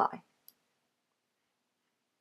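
The tail of a spoken word, then a single short click about half a second in, followed by near silence.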